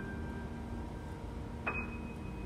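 Grand piano played slowly and softly: a high note rings on and fades, and another single high note is struck about a second and a half in, over lower notes dying away.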